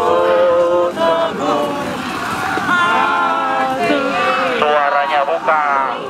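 Many voices of a large group of army recruits chanting together, loud and unbroken, with drawn-out sung notes.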